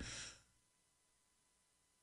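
Near silence: a faint breath of air fades out in the first moment, then the sound drops out entirely.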